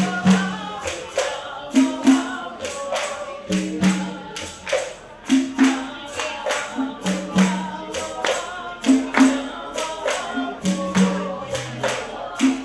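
Live song with singing voices over hand percussion: maracas and rattles shaken in a steady beat of about three strokes a second, with a low two-note pattern repeating underneath.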